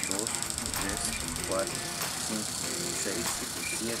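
A man's voice counting slowly in Spanish, one number at a time, over a steady high hiss.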